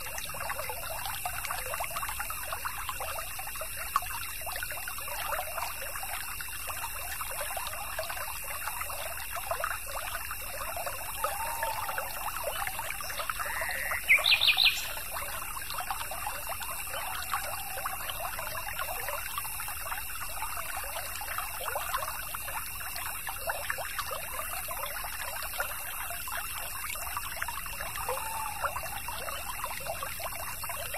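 A small stream trickling and babbling steadily, with one bird call about halfway through: a rising note that breaks into a quick run of loud, high notes.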